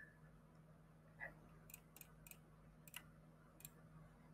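Near silence: room tone with a faint steady low hum. About six short, faint clicks come from about a second in onward.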